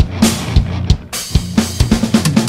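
Sampled acoustic drum kit from the BFD3 virtual drum plugin playing a steady rock groove of kick and snare hits with cymbal wash.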